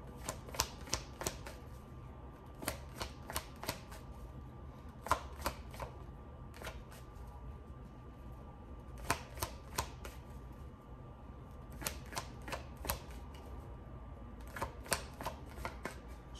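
A deck of tarot cards shuffled by hand, cards passed and slapped from one hand to the other. The sound comes as short runs of quick, sharp card snaps, about a second long, every couple of seconds.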